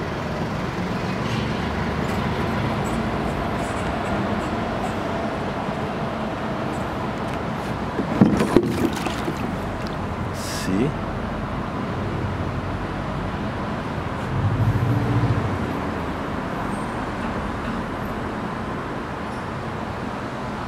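Steady background traffic noise with faint voices. There is a short knock about eight seconds in, a brief hiss about ten and a half seconds in, and a low rumble lasting about a second near fifteen seconds.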